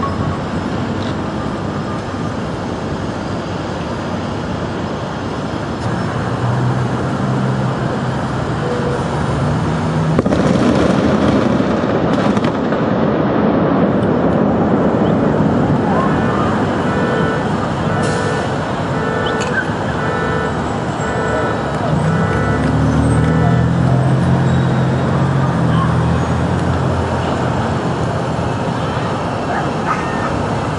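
A special-effects explosion on a film set goes off about ten seconds in as a broad rumbling blast over street noise and voices. Later a repeating electronic beep sounds for a few seconds, followed by a low hum.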